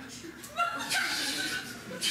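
A person's high-pitched whining voice, starting about half a second in and lasting over a second.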